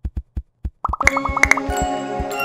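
Channel intro jingle: a few short soft pops, then a quick run of bright plinking notes leading into light, gentle music.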